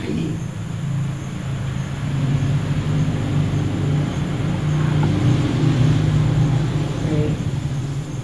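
A motor vehicle's engine running close by: a low, steady rumble that grows louder from about two seconds in, peaks around the middle and then eases off, as of a vehicle passing slowly.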